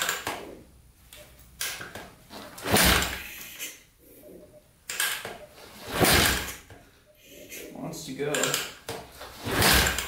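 Yamaha XT500 air-cooled single-cylinder engine being kick-started with the choke off: three hard kicks about three seconds apart, each a short burst of the engine turning over through compression without catching, with lighter knocks of the kick lever between them.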